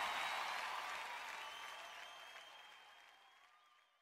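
Faint crowd applause as a song ends, fading away to silence within about three seconds.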